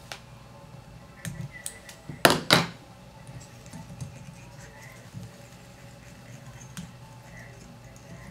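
Small hard clicks and clinks from fly-tying tools being handled at the vise, the two loudest close together about two and a half seconds in, over a faint steady hum.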